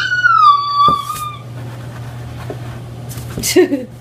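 A toddler's long, high-pitched squeal in the first second and a half, falling slightly in pitch, then a short lower vocal sound near the end, over a steady low hum.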